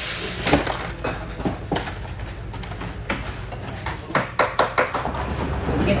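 Scattered, irregular clicks and knocks of hard objects being handled, several in quick succession about four seconds in, after a short laugh at the start.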